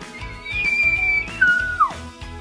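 A high, whistle-like tone held for about a second, then stepping lower and sliding quickly down, over background music.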